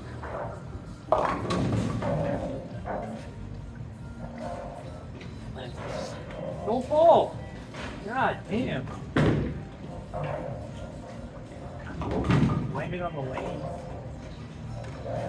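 Bowling ball crashing into pins about a second in, followed by further sharp clatters and thuds of balls and pins later on, in a large echoing hall with background music and voices.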